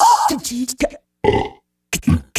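Beatboxing: rhythmic vocal clicks and low, throaty mouth sounds, broken by two short silences in the second half.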